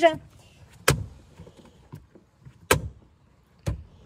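The centre armrest lid of a BMW X1 being worked open and shut, giving three sharp plastic knocks: about a second in, midway and near the end. It snaps shut hard rather than closing slowly.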